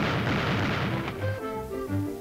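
Cartoon sound effect of a shotgun blast tearing through a wooden door: a sharp bang, then a crashing noise that dies away about a second in. Orchestral cartoon score follows.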